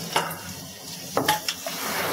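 A sound-effect bed of water washing, with a few sharp knocks or clanks: one just after the start and two more a little past the middle.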